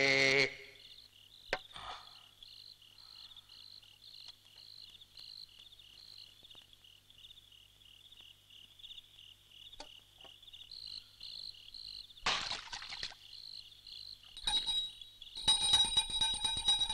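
Crickets chirping steadily, a few high pulses a second, with a short rustling burst about twelve seconds in. Near the end, music with bell-like tones comes in.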